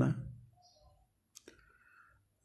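A man's spoken word trailing off, then near silence broken by two faint clicks close together about one and a half seconds in.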